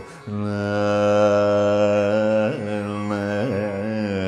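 Male Carnatic vocalist singing raga Saveri. After a brief breath at the start he holds one long steady note, then turns it with two quick ornamental pitch movements (gamakas) near the end.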